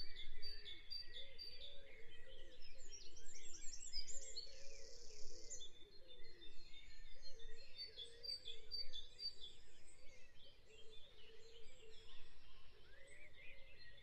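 Dawn chorus: many songbirds singing and chirping over one another, with a fast buzzy trill about four to six seconds in.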